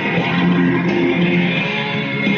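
Electric guitar, a Stratocaster-style with single-coil pickups, strummed and picked in sustained chords over a full rock-band backing track of the song.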